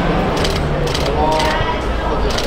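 Camera shutters clicking three times over steady crowd chatter.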